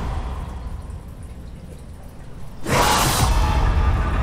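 Horror-trailer sound design: a low rumble fades away over about two and a half seconds, then a sudden loud hit swells in and holds.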